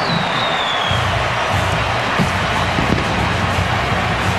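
Stadium crowd cheering after a home touchdown, with band music playing over it in sustained notes from about a second in.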